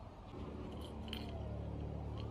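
Car keys jingling in a hand, with a few light metallic clinks about a second in, over a low steady rumble.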